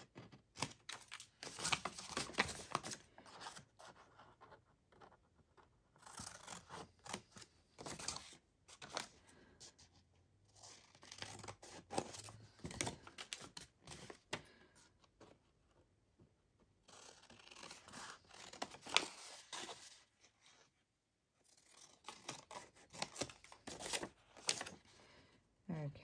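Large scissors cutting through marbled paper: runs of crisp snips lasting a few seconds each, separated by short pauses, with a brief near-silent gap about three-quarters of the way through.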